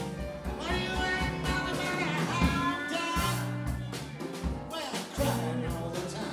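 Small live band playing: a man singing over electric guitar and a drum kit, with a steady beat and a bass line underneath.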